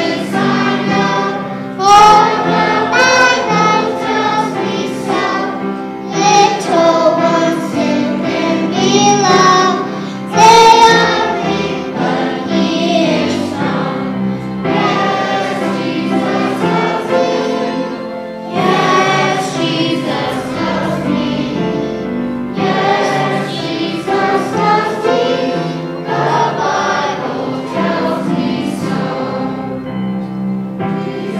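A group of young children singing a song together, in phrases of a few seconds each.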